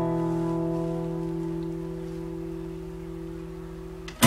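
An acoustic guitar chord left ringing, its notes held and slowly fading away with no new strums.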